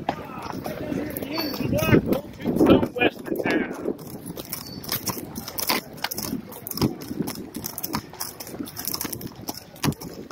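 A horse's hooves clopping at a walk on a dirt street, heard from the saddle, in an uneven string of knocks about one to two a second. Indistinct voices are heard over the hoofbeats for the first few seconds.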